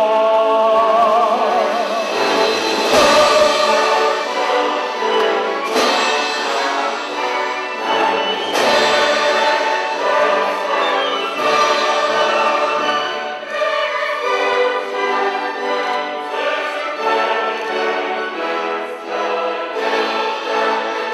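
A large mixed choir singing with vibrato over a symphony orchestra of strings and harp, a loud classical choral-orchestral passage. Three sharp accents cut through it about three seconds apart in the first half.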